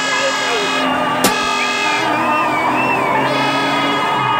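Loud street din: a steady blaring horn-like tone that drops out for about a second and a half in the middle, wavering voices or music over it, and one sharp crack a little over a second in.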